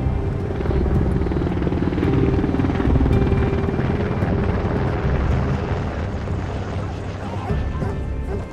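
Helicopter rotor chopping in a fast, steady low beat, with a steady hum over it that fades in and out.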